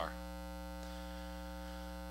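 Steady electrical mains hum with a ladder of evenly spaced overtones, unchanging throughout.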